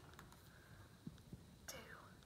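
Near silence, with faint whispering and a few soft taps as small paper cutouts are picked off a plastic tray and set down on a paper worksheet on a tabletop.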